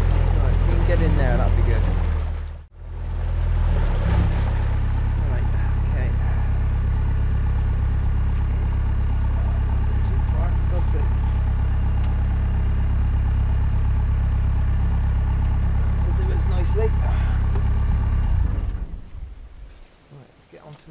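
A narrowboat's inboard diesel engine running steadily at low revs, as the boat comes in slowly to moor. The sound dies away about a second before the end.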